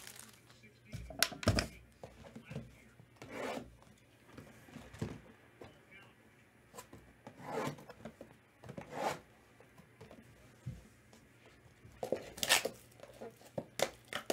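A cardboard box of trading cards handled and opened by hand: scattered short rubbing and tearing sounds with quiet gaps between them.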